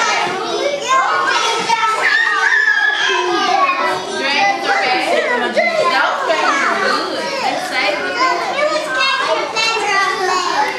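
A room full of young children talking and calling out over one another, making a steady din of overlapping voices.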